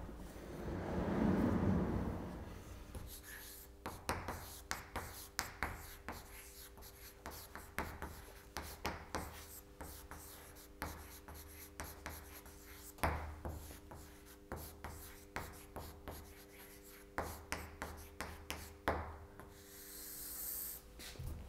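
A sliding chalkboard panel is pulled down with a rumbling scrape over the first couple of seconds. Then comes chalk writing on a blackboard: quick taps and scratches in irregular bursts with short pauses between words.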